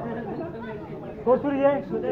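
Background chatter of several voices, with one voice calling out louder for about half a second midway.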